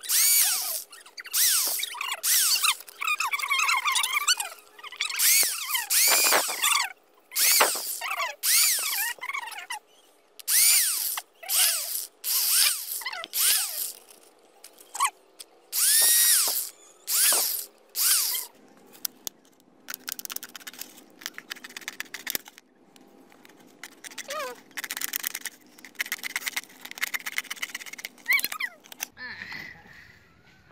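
Corded 500 W electric impact drill boring small holes through a thin plastic bottle in many short bursts. The motor's pitch rises as each burst is triggered and falls away between holes. In the second half the bursts are quieter and come closer together.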